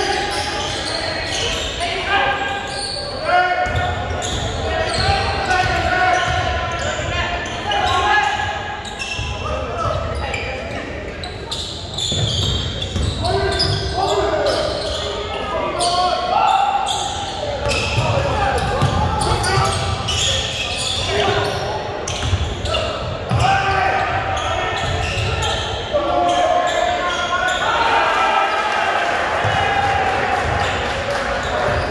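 Live basketball game in a large, echoing gym: voices call out on and off over the ball bouncing on the hardwood court.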